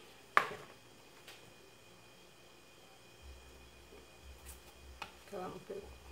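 Handling noise from gluing foam pieces onto a carton: one sharp click about half a second in and a fainter tap about a second later, then quiet.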